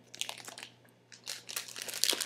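Clear plastic packaging bags crinkling as they are handled and opened, in rustling bursts with a short lull about a second in.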